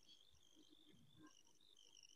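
Near silence, with faint high-pitched insect chirring in the background, coming in short broken stretches.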